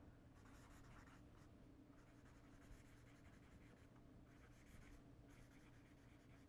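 Faint scratching of a marker writing on paper, in a series of short strokes.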